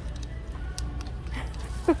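Shop ambience: a low steady hum with faint background music and a few light clicks, then a woman begins to laugh near the end.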